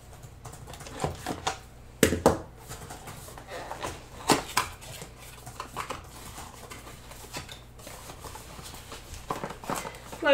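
A cardboard box being cut and opened by hand: scattered taps, scrapes and knocks of cardboard. The loudest knocks come about two seconds in and again a little after four seconds.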